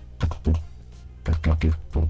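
Keystrokes on a computer keyboard: about six sharp clacks, each with a low thud, two quick ones early and a run of four in the second half.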